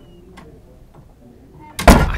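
Quiet room tone during a pause, with one faint tick, then a man's voice starts abruptly and loudly close to the microphone near the end.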